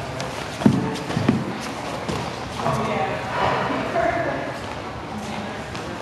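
Two dull thuds of grapplers' bodies and limbs hitting foam gym mats, about half a second apart, followed by indistinct voices talking in the room.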